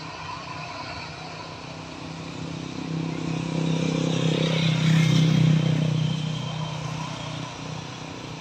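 Engine noise that swells to its loudest about five seconds in and then fades, over a steady faint whine.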